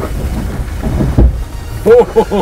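Low rumble inside the cab of a Mercedes Sprinter 4x4 van crawling over rough off-road ground, with a deep thump a little past halfway.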